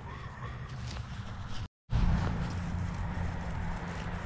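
Steady low outdoor rumble with no distinct events, broken by a moment of dead silence just before two seconds in, where the footage is cut.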